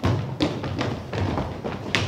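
Children's footsteps on a wooden stage floor: a run of irregular knocks and thumps, the strongest right at the start and just before the end.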